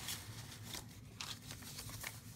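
Page of a handmade paper journal being turned by hand: faint rustling of the paper with a few soft crinkles from about a second in.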